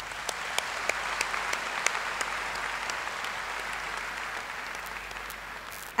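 Audience applauding: a steady wash of many hands clapping with a few sharper single claps standing out, easing off gradually toward the end.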